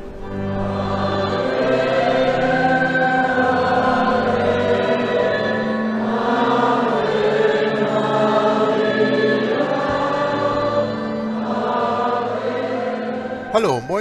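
A choir singing slow sacred music in long held chords over a steady low line.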